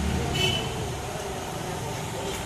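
Road traffic: a passing vehicle's low rumble, loudest in the first second, with a brief high horn toot about half a second in, then a steady background hum.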